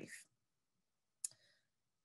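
Near silence in a pause of speech, broken by one short sharp click a little over a second in.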